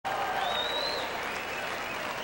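Large arena crowd applauding and murmuring, with a thin high whistle for about half a second near the start.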